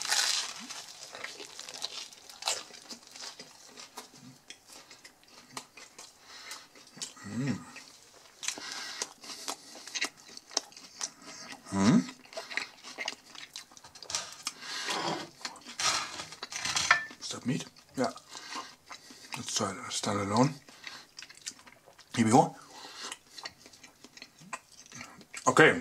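Chewing a mouthful of chicken döner in toasted flatbread, with many small crisp crunches from the toasted crust, and a few short hummed sounds between chews.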